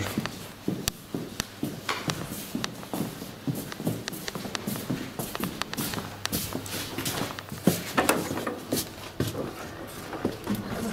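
Footsteps on a hard floor with knocks and rustles from a large cardboard parcel box being carried, a few irregular knocks a second.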